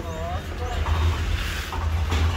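A motor scooter engine running with a low, steady rumble that grows a little stronger about a second in.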